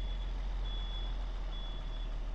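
Backup alarm of heavy construction equipment beeping, one high steady tone about once a second, three beeps, over a low steady rumble of a diesel engine running.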